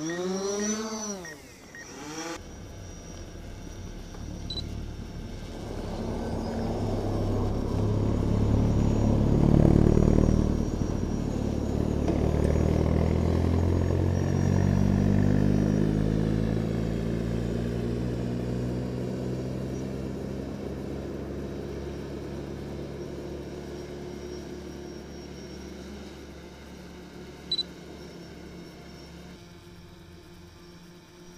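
Cars driving past on a road: their engines swell as they approach, are loudest about ten seconds in, then fade slowly with a falling pitch as they pull away. A single short click comes near the end.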